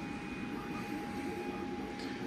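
3D printers running inside the enclosure: a steady mechanical hum with a thin, steady whine over it.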